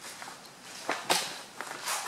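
Footsteps on a concrete floor, with a couple of short scuffing steps about a second in.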